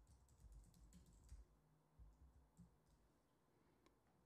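Faint keystrokes on a computer keyboard as a password is typed: a quick run of taps in the first second and a half, then a few scattered ones.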